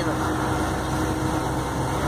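Truck engine and road noise heard from inside the cab while driving on the highway: a steady low drone with a faint steady hum over it.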